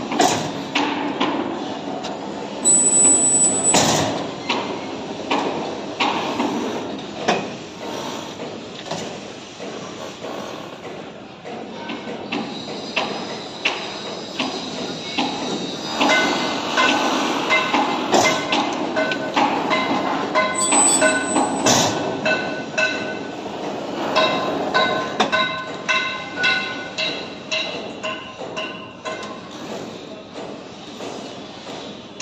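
Steel TMT bars clanking and knocking against each other and the rebar bending machine as they are handled and bent: many sharp metal knocks, with ringing metallic tones repeating in quick succession through the second half. A brief high-pitched tone sounds twice, near the start and about two-thirds of the way through.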